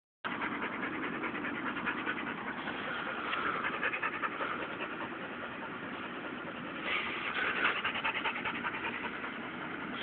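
A dog panting rapidly and steadily.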